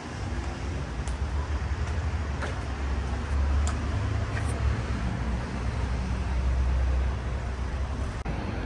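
Steady low rumble of nearby road traffic, with a few faint clicks.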